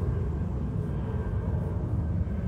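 Steady low outdoor rumble picked up by a phone microphone, with nothing standing out above it.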